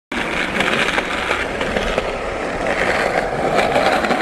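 Skateboard wheels rolling steadily over pavement: a continuous gritty rolling noise with a few faint clicks.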